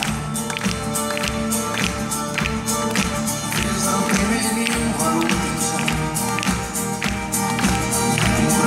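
A live band playing an instrumental passage: violin and cello holding sustained notes over acoustic guitar and keyboard, with a drum kit keeping a steady beat of about two hits a second.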